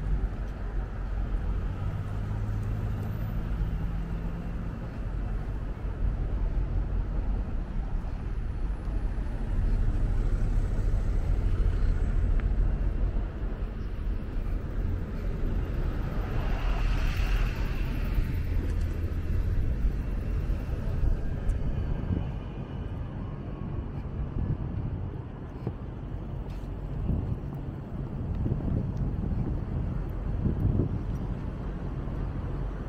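Road traffic on a bridge: a steady low rumble of passing vehicles, with one louder pass that swells and fades about halfway through.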